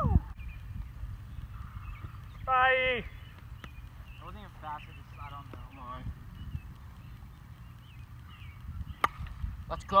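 A yellow plastic wiffle ball bat hitting a wiffle ball: one sharp crack about nine seconds in, the contact of a long hit. Before it, a loud shouted call and scattered distant voices over a steady low rumble.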